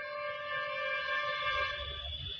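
Public-address microphone feedback: a steady ringing of several high tones held without a break, with no rise or fall in pitch.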